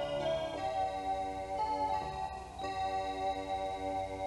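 Instrumental background music: sustained chord tones that shift every second or so.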